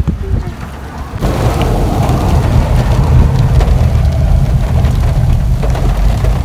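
Heavy rain falling on a car's windscreen and body, a steady hiss over a low rumble. It starts abruptly about a second in, after a quieter stretch.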